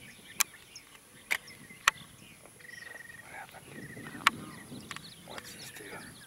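Small birds chirping, with two short, even trills in the middle, over a faint outdoor background. Four sharp clicks stand out as the loudest sounds.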